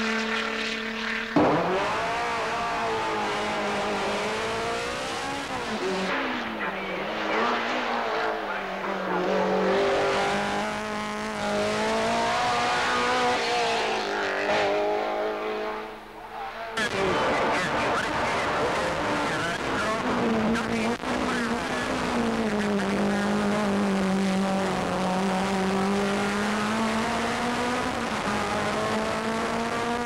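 Racing car engines at full throttle, pulling hard through the gears, their pitch climbing and dropping with each shift. The sound changes abruptly about a second and a half in and again just past halfway, each time to another car.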